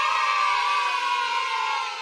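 A group of children cheering, one long held shout that begins to fade near the end.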